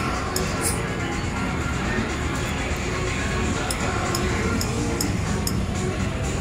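A video slot machine playing its electronic spin music and reel sounds during a max-bet spin, with a run of short, sharp clicks in the second half.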